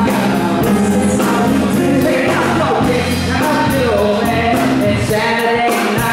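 Live band playing an up-tempo R&B pop song: drum kit keeping a steady beat under electric bass, guitar and keyboards, with singing.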